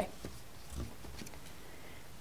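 Quiet studio room tone, with one faint, brief low sound a little under a second in.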